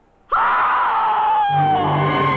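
A woman's long scream, starting suddenly and sliding slowly down in pitch, with low orchestral music coming in under it about one and a half seconds in.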